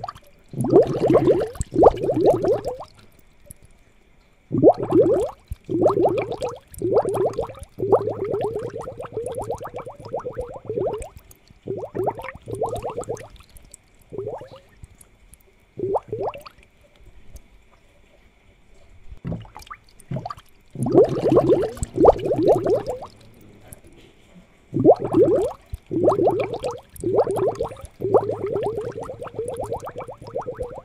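Aquarium air bubbles gurgling in irregular bursts of a second or two, each a quick run of bubbling pops, with quieter gaps between them. A faint steady high whine runs underneath.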